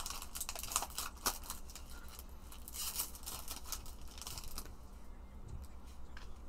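A foil trading-card pack being torn open by hand, the wrapper crinkling and crackling in an irregular run of small crackles that thin out near the end.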